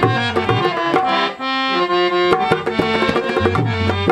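Harmonium playing a melody over fast hand drumming on a rope-tensioned barrel drum and tabla. The drumming thins out briefly about a second and a half in while the harmonium holds its notes, then picks up again.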